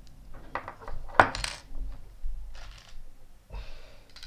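Small metal clinks from a hex (Allen) key tightening the post screw on a rebuildable dripping atomizer deck and then being set down on a wooden table. The sharpest clink comes about a second in, followed by a few lighter clicks and soft handling noise.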